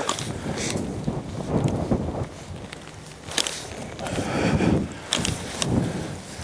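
Wind rumbling on the microphone, with a few sharp snips of hand pruning shears cutting back young cherry shoots, heading cuts to stiffen the branch.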